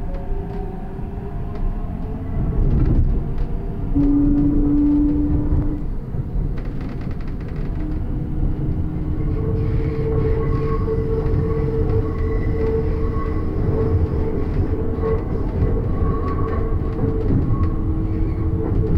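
Electric metro train running on an elevated track, heard from inside the car: a steady rumble of wheels on rail. A short, louder hum comes about four seconds in, and from about halfway through a steady whine holds over the rumble.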